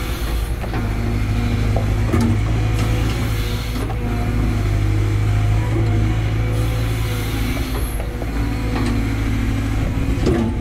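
CAT 320GC excavator's diesel engine running steadily under load, with the hydraulic whine shifting up and down in pitch as the bucket scrapes and pats down loose soil. A few short knocks and clanks come through from the bucket and linkage.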